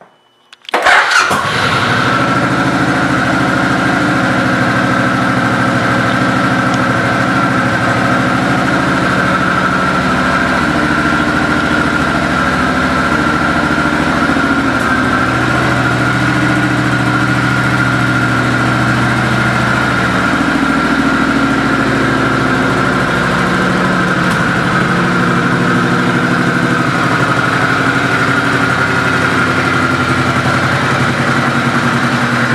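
A 2005 Suzuki C90T Boulevard's V-twin engine starts about a second in, catching at once, then settles into a steady idle. The idle wavers a little in pitch midway, and a steady high tone runs along with it throughout.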